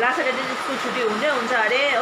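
A woman talking, over a steady whirring background noise.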